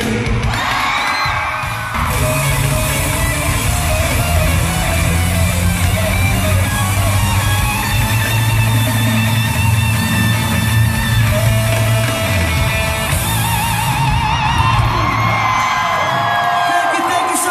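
Live concert music with electric guitar, played loud through an arena sound system, with fans yelling over it.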